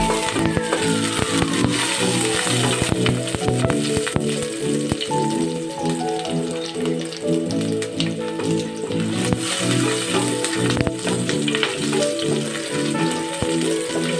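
Onion and garlic sizzling in oil in a stainless steel pan, with the clicks of a wooden spatula stirring them. Background music with a steady rhythm plays over it.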